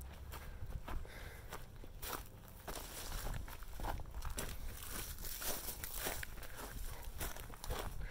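Footsteps of a person walking, a scatter of irregular soft steps and crunches over a low rumble of phone-handling noise.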